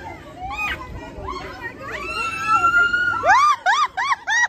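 Voices of people on a spinning chair swing ride: shouts and chatter, a long held cry about two seconds in, then a quick run of short high-pitched yells near the end.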